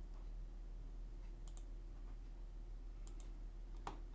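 Computer mouse clicks: two close pairs of sharp clicks, then one louder single click near the end, over a steady low electrical hum.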